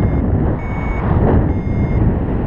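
Paraglider's flight variometer beeping three times, each a short, steady high tone, the intermittent beep a vario gives in rising air. Underneath is loud wind rush on the microphone from the glider's airspeed.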